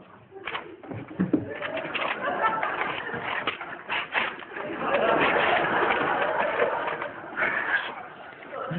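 A man's wordless vocal noises, voice-like and in the range of cooing: a few short sounds at first, then more continuous from about five seconds in.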